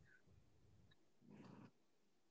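Near silence on a video-call line, with one faint short sound a little past the middle.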